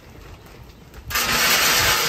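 Wood pellets pouring from a bag into the pellet hopper of a Pit Boss Titan pellet grill. The sound is a steady, loud rush that starts about a second in.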